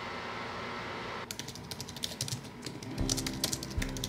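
Fast typing on a slim low-profile computer keyboard: a quick run of light key clicks beginning about a second in. Background music with a low pulsing beat comes in near the end.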